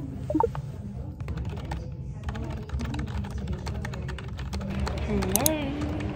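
Typing on a computer keyboard: a quick run of key clicks over a steady low hum.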